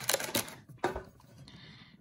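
Light clicks and rattles of biscuits against the plastic tray of a biscuit tin as a hand picks out a custard cream, with a sharper click just under a second in, then quieter.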